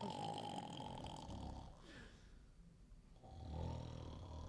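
A man snoring heavily in his sleep: one drawn-out snore at the start, a lull, then another building near the end. It is loud enough to be joked about as a chugging beet-factory engine.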